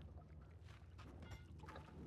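Near silence: a faint low rumble of ambience with a few soft scuffs and rustles of movement.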